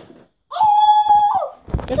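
A child's loud, high, held yell of about a second, starting about half a second in and dropping in pitch at its end, followed near the end by a sharp knock.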